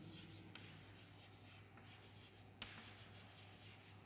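Chalk writing faintly on a chalkboard: soft scratching with a few light taps, one sharper tap a little past halfway, over a low steady hum.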